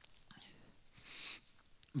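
Faint rustling of handled book pages and a soft breath, with a few small clicks near the end.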